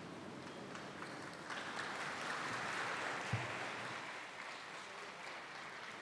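Large audience applauding, the clapping swelling about a second and a half in and easing slightly toward the end. A single short low thump sounds a little past halfway.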